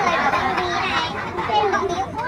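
Several voices chattering over one another, including children's voices; in the second half one voice stands out more clearly.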